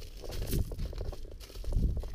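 Low rumbling wind and handling noise on a camera microphone held close to the ground, with a few faint crunches.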